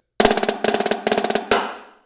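Marching snare drum played with sticks: three flam fives (flammed five-stroke rolls) off the right hand in quick succession. It ends on a loud rimshot that rings out for about half a second.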